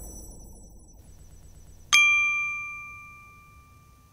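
A single bright ding about two seconds in, a chime sound effect that rings with a few clear tones and fades over the next second and a half. Before it, the faint ringing tail of the preceding effect dies away.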